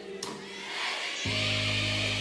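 Live band music in a short pause between sung lines: after a brief lull, a steady low held chord comes in suddenly a little over a second in, with a high rushing noise above it.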